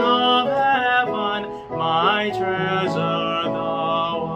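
A man singing a slow hymn solo, holding long notes with small pitch slides, over a steady instrumental accompaniment.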